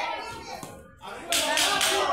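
A quick run of three or four sharp slaps in the second half, following a short lull.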